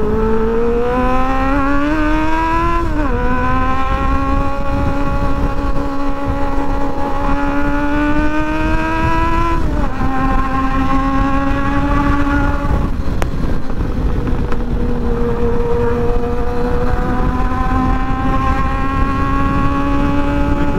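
Sport motorcycle's engine pulling through the gears at highway speed: the pitch climbs steadily, falls sharply at an upshift about three seconds in and again near ten seconds, then holds and rises gently again toward the end. Wind rushes over the bike-mounted microphone throughout.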